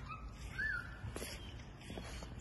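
A bird calling: a short whistled note that rises and falls about half a second in, after a fainter brief note at the start, over a low rumble.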